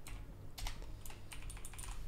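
Computer keyboard typing: a string of faint keystrokes, some in quick clusters.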